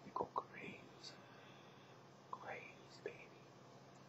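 A baby's soft, breathy vocal sounds: two quick pops at the start, then short squeaks that rise in pitch, the clearest about two and a half seconds in.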